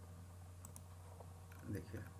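A few faint computer mouse clicks, two close together about two-thirds of a second in and another a little later, over a steady low hum. A man's voice starts near the end.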